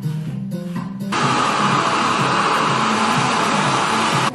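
Handheld hair dryer switched on about a second in, blowing steadily and loud, aimed at hair. Background music plays before it and carries on faintly underneath.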